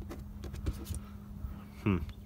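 A steady low hum with a few faint ticks, and a man's brief murmured "hmm" near the end.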